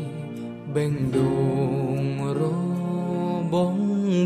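A Khmer pop song: a male voice sings a phrase over a steady band accompaniment, with a short lull about half a second in before the next line begins.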